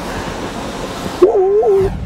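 Steady outdoor hiss of wind and water, cut off abruptly about a second in by a short wavering synthetic tone lasting about half a second, the opening sound effect of a logo animation.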